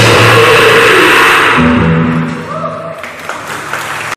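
Black metal band playing loud distorted music that dies away about halfway through, leaving a few held notes ringing at a lower level.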